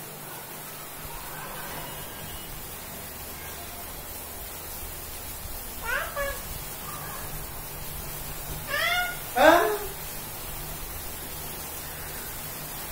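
A toddler's short, high whimpering cries, a few of them, the loudest about nine and a half seconds in.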